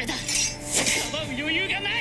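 A young man's voice from an anime soundtrack shouting lines in Japanese during a fight. Two sharp hits sound, one at the start and one almost a second in.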